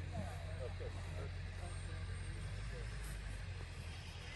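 Faint outdoor background of people talking at a distance, mostly in the first second or so, over a steady low rumble.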